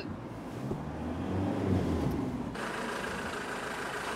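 Ford Transit van driving, its engine humming low, heard first from inside the cab. About two and a half seconds in, the sound switches abruptly to the outside, where a steady hiss joins the engine as the van pulls up.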